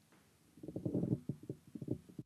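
Microphone handling noise: a rapid, irregular run of low knocks and rubbing from the microphone stand being touched and moved, starting about half a second in.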